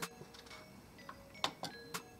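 Arrow buttons on an Epson XP-900 printer's control panel pressed a few times to step through the alignment square numbers: short, sharp clicks, the strongest about one and a half seconds in.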